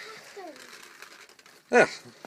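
Faint rustling and handling noise from a hand-held camera being moved about, with a man's short spoken word near the end.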